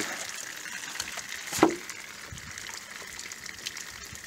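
Water running and trickling out of bullet-holed plastic gallon jugs. About one and a half seconds in, a single sharp knock of a hand against a jug stands out.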